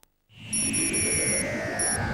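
A moment of silence, then a television trailer's soundtrack cuts in: a loud, dense swell of dramatic music and sound effects with heavy low rumble, a slowly falling tone and a thin high whistle that drops out briefly near the end.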